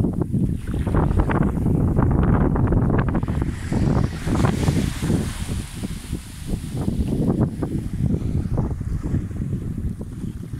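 Wind buffeting the phone's microphone in a loud, gusting low rumble, over small waves washing onto a sandy beach; a softer wave hiss swells in the middle.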